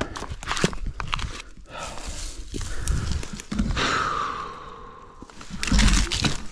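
Rustling and crunching of dry brush and pine needles, with scattered knocks and footsteps, as a dirt bike that has gone down is handled and picked back up.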